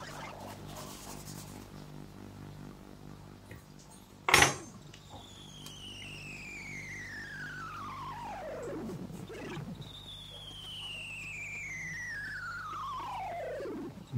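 A sharp click, then two long whistle-like tones, one after the other, each gliding steadily down in pitch for about four seconds, over a low pulsing hum.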